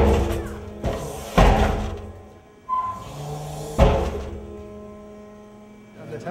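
Seismic shake table jolting a half-scale cob (clay, sand and straw) house model: about five heavy thuds at irregular intervals, each ringing out, the last about four seconds in. These are severe impacts from the table moving while its hydraulics have a problem.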